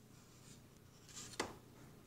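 Quiet room tone with one brief, scratchy rub about a second and a half in, a hand or paintbrush moving over a surface.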